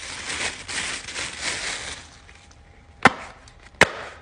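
Tissue paper rustling and crinkling as it is unwrapped, then, after a short lull, two sharp pops less than a second apart from a fidget toy's push bubbles being pressed.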